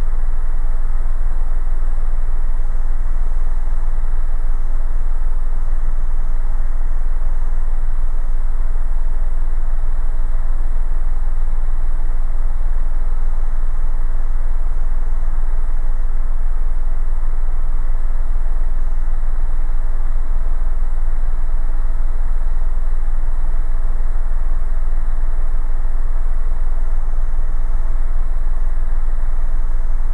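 Cabin noise of an Airbus Helicopters EC130 in level flight: the Safran turboshaft engine, gearbox and rotors make a steady, loud drone with a constant whine running through it. The engine is held at maximum continuous power for a power check.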